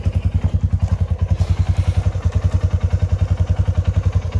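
Engine idling steadily with an even low beat of about ten pulses a second.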